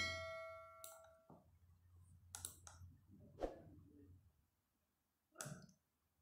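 A short bell-like chime from a subscribe-button animation, ringing at the start and fading within about a second. It is followed by a few faint, separate mouse clicks.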